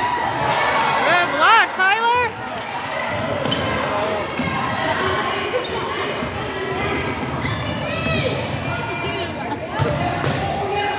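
A basketball bouncing on a hardwood gym floor and sneakers squeaking, in a large echoing hall; a quick run of sharp squeaks comes about one to two seconds in, and a few more near the end.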